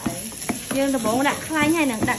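Chopped garlic sizzling in hot oil in a small electric pot while a spatula stirs and scrapes it, with one sharp knock of the spatula on the pot.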